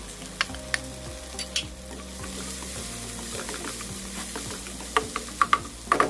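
Minced garlic and chopped onion sizzling in oil in a nonstick wok as they are stirred, with a steady frying hiss. Scattered clicks and scrapes of a utensil against the pan come throughout, with a cluster of sharper taps about five seconds in.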